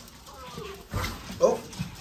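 A small dog giving a brief whimper about a second and a half in, just after a knock.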